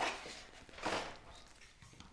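Handling noise as a white plastic packaging tray is pushed aside across a cutting mat, with a soft scrape about a second in.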